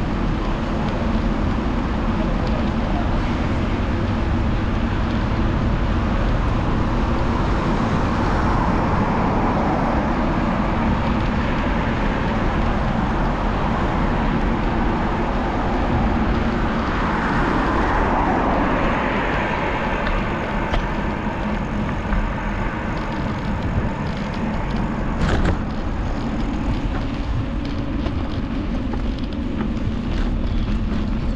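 Steady wind rush on a handlebar-mounted action camera and tyre noise from a bicycle riding along a city street, with road traffic alongside. The noise swells twice, and a single sharp click comes near the end.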